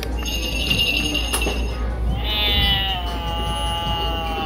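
Battery-powered Halloween doorbell toy playing its sound effect: a steady electronic buzz, then about two seconds in a long, slightly falling recorded cat yowl for its 'Ms Kitty Clawbottom' button.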